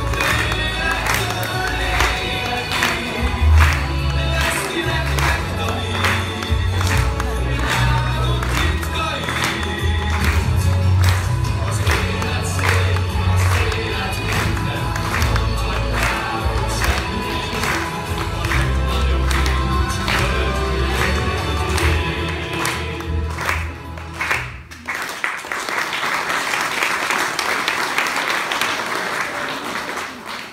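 A group of young male voices singing together over musical accompaniment with a steady beat, about two beats a second, and heavy bass. The song stops about 25 seconds in and the audience applauds.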